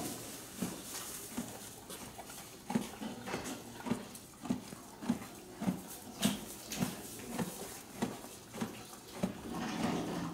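Horse chewing hay with its muzzle down in a hanging feed bin: a steady rhythm of crunching chews, a little under two a second.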